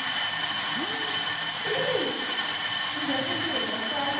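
A loud, steady high-pitched ringing with several overtones held at once. It starts abruptly just before and eases off just after, with faint low wavering sounds beneath it.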